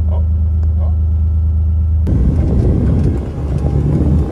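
A truck's engine running at a steady low idle hum; about two seconds in it switches abruptly to a louder, rougher rumble of the truck on the move.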